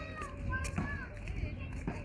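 Children's high voices calling and chattering, with gliding pitch, over a steady low rumble.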